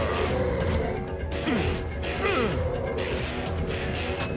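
Animated-battle sound effects over a dramatic orchestral-style score: repeated crashing impacts, and two sweeps falling in pitch, about one and a half and two and a half seconds in.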